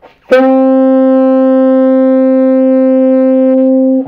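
Tenor saxophone holding one long, steady middle D (sounding concert C), entering with a sharp attack a third of a second in. It is a note that sounds kind of hairy on this horn: one of the saxophone's weaker, muffled notes.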